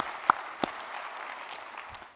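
Audience applauding in a large hall, with a couple of sharper, louder single claps close to the microphone in the first second and another near the end.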